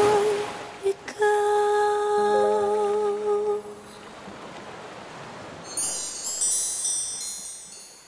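The ending of a pop ballad: a voice holds the final note with vibrato over a low sustained note. The music then thins out, and a high twinkling chime-like flourish rings and fades away.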